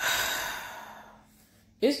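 A woman's heavy sigh, a breathy exhale that starts suddenly and fades away over about a second, before she starts speaking again near the end.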